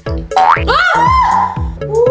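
Upbeat background music for children with cartoon boing sound effects: a couple of quick rising glides in the first second, followed by a held, wavering tone over a steady repeating bass line.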